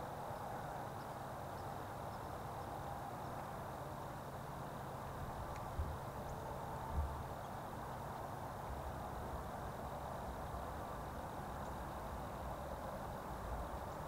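Faint, steady outdoor background hiss and low hum, with two soft low thumps about six and seven seconds in.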